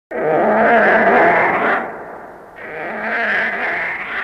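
Monster roar sound effect from a 1960s kaiju show, two long calls with a short gap between them.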